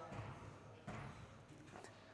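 Quiet room tone with a few faint, short knocks, the clearest about a second in and again near the end.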